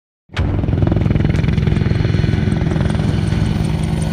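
AH-64 Apache attack helicopter flying low, its rotor chop and turbine engines running loud and steady. The sound cuts in suddenly a fraction of a second in.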